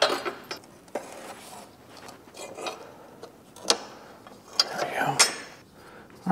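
Metal clinks and clicks of side cutters working cotter pins and washers out of a garden tractor's steel linkage: a handful of separate sharp clicks spread over a few seconds.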